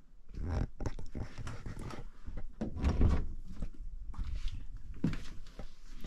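Footsteps, rustling and a door being opened: a run of irregular knocks and scuffs, the loudest about three seconds in.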